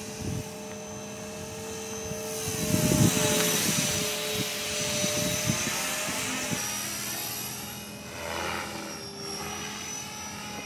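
Blade 450 3D electric RC helicopter flying overhead: a steady rotor whine with several held tones, swelling into a louder rush about two seconds in and fading again in the last few seconds.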